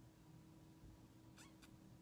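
Near silence: room tone with a faint steady hum, and two faint brief clicks about a second and a half in.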